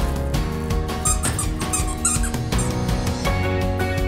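Background music with a steady beat. Over it, about a second in, a quick run of about four high squeaks from a squeaky dog toy being chewed by a puppy.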